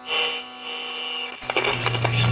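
Electric buzzing sound effect for a neon-sign logo lighting up: a steady buzz, a click about one and a half seconds in, then a louder low hum that swells.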